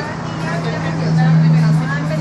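People's voices chattering over a steady low hum, which swells louder about a second in.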